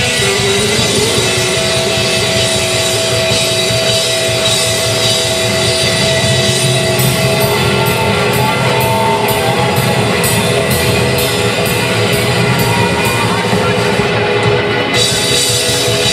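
Live rock band playing loud: hollow-body electric guitar, upright bass and drum kit. From about halfway through, a cymbal keeps time at about two hits a second, stopping just before the end.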